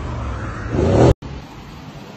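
A car engine revving, swelling in loudness and cut off abruptly just over a second in. After the cut, a steady, quieter background noise.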